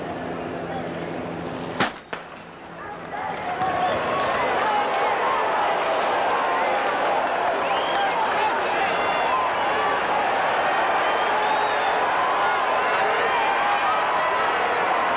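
A starting pistol fires once, about two seconds in, to start the race. About a second later a large stadium crowd's cheering swells up and stays loud.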